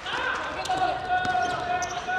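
Futsal being played on a wooden indoor court: short sharp ball kicks, bounces and shoe squeaks, with a voice holding one long shout from under a second in.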